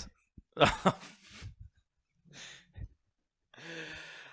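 A man's short breathy laugh, then a faint exhale and a longer sigh-like breath near the end, with quiet gaps between.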